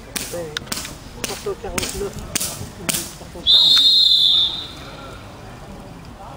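A run of about six sharp cracks in quick succession, then a whistle blown once, a steady high tone about a second long and the loudest sound here.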